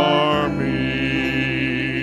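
Worship music: voices holding long, slightly wavering notes over sustained chords, moving to a new note about half a second in.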